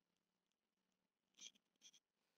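Near silence, with two faint brief sounds in the second half.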